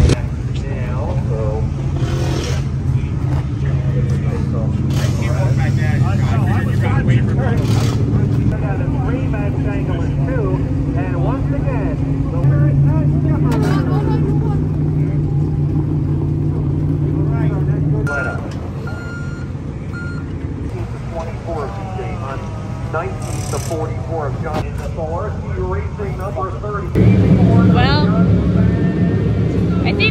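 Steady low drone of dirt-track race car engines running, with people talking over it. The drone drops away about eighteen seconds in and comes back louder near the end.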